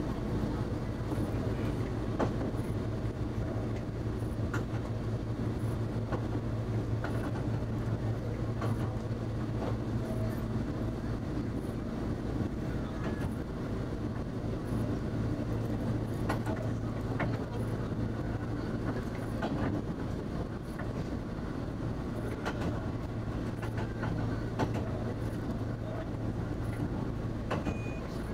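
Diesel railcar heard from the driver's cab while under way: a steady low engine drone, with wheels clicking over the rail joints every second or two. The engine note drops back briefly about two-thirds of the way through, then comes up again.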